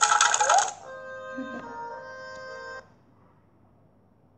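Bright, rapidly twinkling chime flourish over the story app's gentle background music. The music stops suddenly about three seconds in, leaving near silence.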